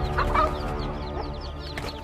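A hen clucking and squawking in alarm while defending her chicks from an attacking eagle, loudest in the first half-second, over a constant rapid high peeping of chicks.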